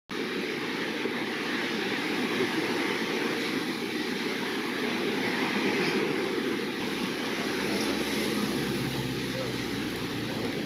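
Steady outdoor background noise, an even rushing with no music or voices, with a faint low hum coming in about seven seconds in.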